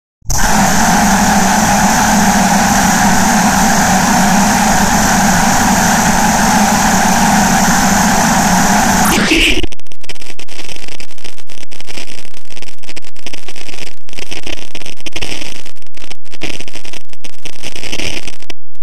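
Heavily distorted, effects-processed logo audio: a dense, steady buzzing noise for about nine seconds. It then jumps louder into a harsh, clipped crackle broken by rapid brief dropouts.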